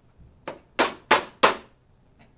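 Four short, sharp smacks in quick succession, about three a second, the first faint and the last three loud.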